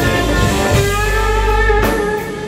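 Live rock band playing an instrumental passage: electric guitar holding notes over heavy bass and drums, with a sharp drum hit near the end.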